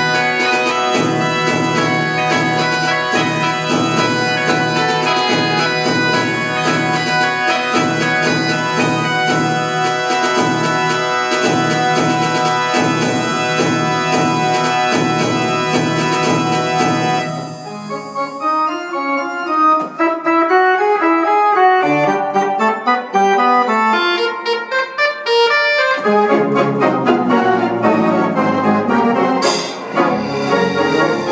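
Allen LL-324Q-SP digital theatre organ playing a medley of American tunes: full, rhythmic chords over a pedal bass. About 17 seconds in the texture thins to a lighter passage without bass, and it fills out again near the end.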